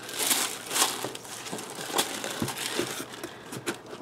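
Tissue paper and crinkle-paper shred rustling and crinkling as hands stuff them into a cardboard box, with a few light taps of hands on the box.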